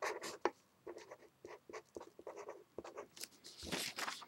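Faint handwriting: a writing tool scratching out short, irregular strokes, several a second, with a longer stroke near the end, as a math equation is written out.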